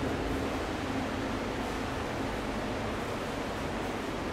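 A steady, even rushing noise with no separate sounds in it, like the background of an air-conditioned room.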